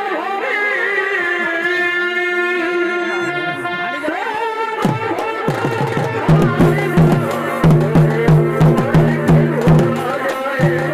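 Live Chhau dance accompaniment: a reed pipe plays a wavering, gliding melody, and about halfway through deep drums enter with a steady beat of roughly two to three strokes a second under the continuing tune.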